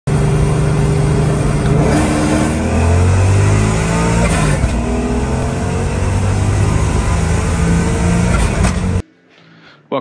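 Car engine running and revving, its pitch rising and falling with the throttle; the sound cuts off suddenly about nine seconds in.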